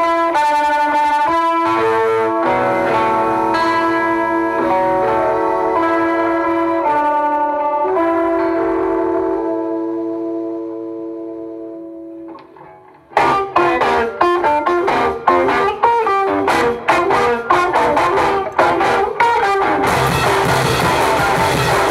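Live rock band: an electric guitar through effects holds sustained, distorted chords that fade away about ten seconds in. After a brief drop the drums and guitar come crashing back in together with a fast run of hits.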